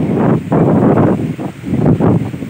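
Wind buffeting a phone's microphone in loud, uneven gusts.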